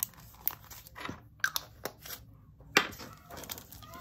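Small plastic zip bag of square resin drills and plastic storage containers being handled: a few scattered light clicks and crinkles, the sharpest just before three seconds in.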